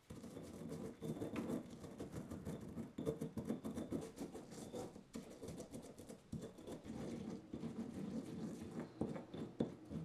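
Stone pestle grinding whole cumin seeds, garlic cloves and coarse salt in a basalt molcajete: a steady run of quick, irregular scraping and crushing strokes of stone on stone.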